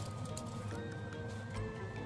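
Soft background music: a held high note that steps down and back up a couple of times over a steady low hum, with faint light ticks.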